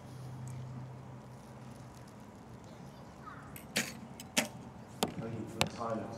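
Recurve bows being shot at an outdoor range: about four sharp, short cracks of bowstring releases and arrows striking the targets, falling in the second half, over a low steady hum.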